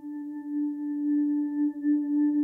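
A singing bowl rings with a long, sustained tone, its loudness wavering in a slow pulse as it sounds.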